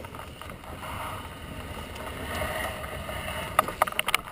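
Wind rushing over the microphone of a camera mounted on a landing hang glider, with dry grass brushing past. Near the end come several sharp knocks as the glider's control bar comes down into the grass.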